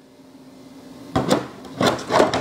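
A 3D-printed plastic jack-o-lantern lamp shade being set down over its light base: a sharp click about a second in, then a short rubbing knock near the end as it seats.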